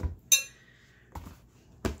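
A single sharp clink with a short ring about a third of a second in, then two dull knocks, from handling wet coffee-dyed paper in a plastic dye tub.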